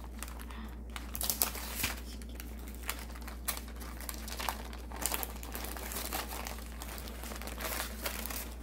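Baking paper crinkling and crackling in irregular bursts as gloved hands peel it away from the sides of a green tea sponge cake.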